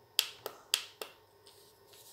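Four short, sharp clicks about a quarter of a second apart in the first second.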